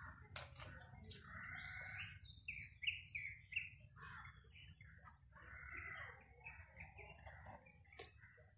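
Faint background birdsong: scattered chirps and calls, with a quick run of about four short repeated notes around the middle. A couple of faint clicks come in the first second or so.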